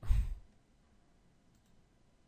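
A short sigh: a half-second puff of breath hitting the microphone right at the start. A faint mouse click follows about a second and a half in.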